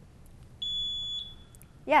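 Quiz-bowl buzzer beeping as a contestant buzzes in to answer: a single steady high-pitched tone lasting about half a second, sounding just after halfway through.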